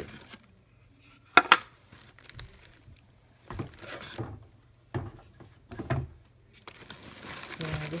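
Wooden craft pieces knocking and clacking together as they are handled, with the sharpest knock about a second and a half in and a few more after. Near the end, a plastic bag crinkles.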